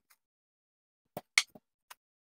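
Three or four short knocks and clicks in the second half, the second the loudest: a rolling pin set down on the countertop and a doughnut cutter picked up.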